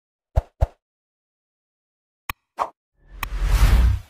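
Sound effects for an animated like-and-subscribe button: two quick clicks close together, two more about two seconds in, then a loud whoosh with a deep rumble building through the last second.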